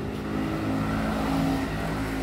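A motor vehicle engine running steadily, a low hum holding one pitch.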